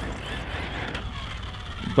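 Team Magic Seth electric desert buggy running on a 6S battery, its motor and drivetrain faint and steady over a low rumble.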